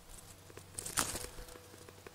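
Plum tree leaves and twigs rustling briefly as the branches are brushed aside, loudest about a second in; otherwise quiet.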